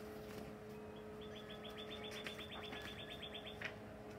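A songbird trilling faintly: a rapid run of even, high notes, about ten a second, that starts a little over a second in and lasts about two and a half seconds, over a faint steady hum.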